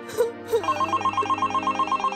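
Mobile phone ringing with an electronic trill ringtone, a fast repeating warble that starts about half a second in. Soft background music plays under it.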